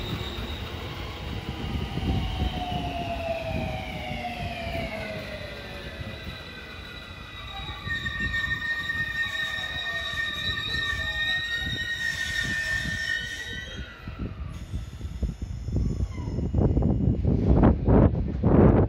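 A JR West 225 series and 223 series electric train braking into a station. The traction motors' whine falls steadily in pitch over the first several seconds, then a steady high brake squeal lasts about five seconds as the train comes to a stop. Loud low rumbling noise comes near the end.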